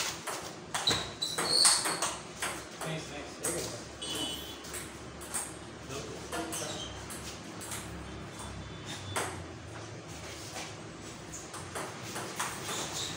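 Table tennis ball clicking off paddles and bouncing on the table in a doubles rally: an irregular series of sharp ticks with a short high ring.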